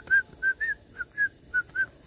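A man whistling a quick string of about eight short, high notes of nearly the same pitch, some with a slight upward flick. The whistling stops shortly before the end.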